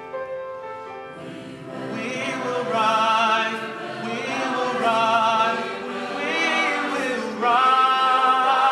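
A high school mixed choir singing with a male soloist at a microphone, the voices carrying a wavering vibrato. The singing starts soft and grows louder from about two seconds in, swelling again near the end.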